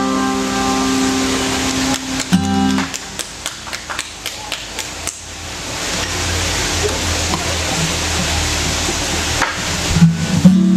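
Acoustic guitar music. A held, ringing chord sounds for the first few seconds and stops, then comes a run of sharp taps, about four a second, and a quieter stretch of noise before the guitar comes back in at the end.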